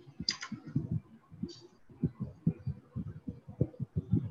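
Muffled typing on a computer keyboard: irregular soft keystrokes, several a second. Two brief, sharper high-pitched sounds come through about a quarter-second and a second and a half in.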